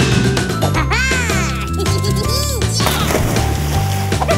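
Upbeat cartoon background music with a bass line stepping from note to note, overlaid by comic sound effects: a cluster of quick rising-and-falling pitch swoops about a second in and another, lower swoop about two and a half seconds in.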